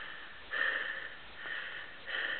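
A person sniffing through the nose twice, the first about half a second in and the second fainter.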